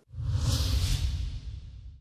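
Whoosh sound effect of the euronews closing logo ident: a sudden rushing swoosh over a deep pulsing rumble. It starts abruptly, peaks about half a second in and fades away near the end.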